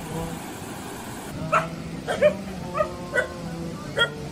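A dog barking in short, high yips, about six in quick succession starting about a second and a half in.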